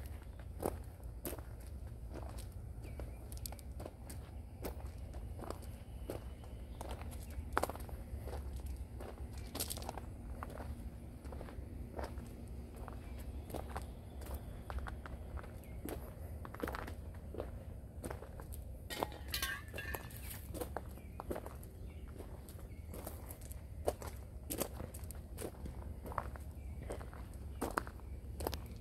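Footsteps crunching on gravel, irregular and fairly faint, over a steady low rumble.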